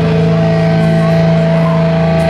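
Loud, steady amplified drone through the club PA: a low held tone with a higher tone held above it, as a metal band's song is about to start.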